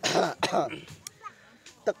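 Two short, breathy vocal bursts from a person, one after the other in the first second, followed by a quieter stretch.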